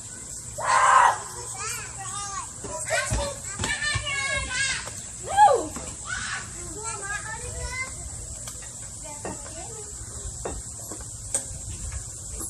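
Children playing: high-pitched calls, shouts and chatter without clear words, with a loud cry about a second in.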